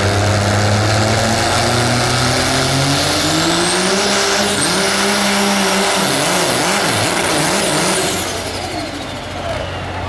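Diesel Dodge Ram pickup pulling a weight-transfer sled at full throttle: the engine note climbs over the first few seconds with a high turbo whistle above it. Near the end the engine and the whistle wind down together.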